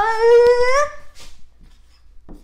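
A boy's voice holding one long sung note, steady in pitch with a slight wobble, that ends about a second in; after it only a few faint ticks.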